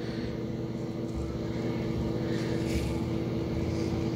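Steady motor hum, with the soft hiss of running shower water behind it, growing a little louder about two seconds in.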